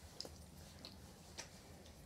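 Near silence with a few faint, brief clicks.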